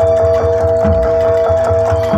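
Live Javanese folk percussion music: a drum beats a fast, uneven rhythm under two steady, held ringing tones.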